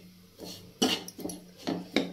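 Steel ladle stirring and scraping a dry, crumbly roasting mixture of gram flour and wheat flour around a non-stick kadhai. There are a few scraping strokes, about a second in and again near the end, with quiet between them.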